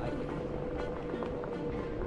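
Onewheel GT electric board rolling over brick pavers: the hub motor's steady whine over the low rumble of the tyre on the paving.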